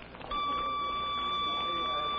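Bell System Bellboy pocket pager sounding its signal: a steady, unbroken tone that starts about a third of a second in and holds. The tone signals that someone has dialed the wearer's Bellboy code number and that he should go to a phone and call in for the message.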